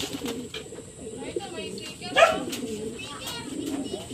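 Domestic racing pigeons cooing, a run of low warbling coos, with one brief louder call about two seconds in.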